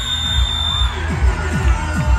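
A long, steady high whistle blast, the starting signal for a running race, ends about a second in. Under it a crowd cheers and shouts over loud music with a heavy bass beat about twice a second.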